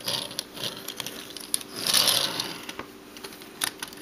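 Plastic Lego pieces clicking and rattling as hands handle a Lego model, a few separate sharp clicks with a soft rustle around the middle.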